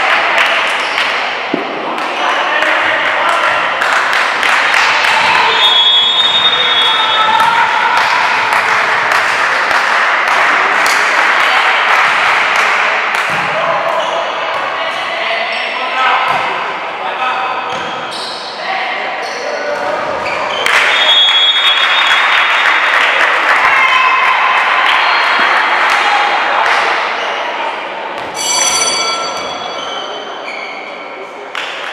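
Volleyball rallies in a reverberant gym hall: players and spectators shouting and cheering in two long loud swells, with sharp thumps of the ball and short referee's whistle blasts.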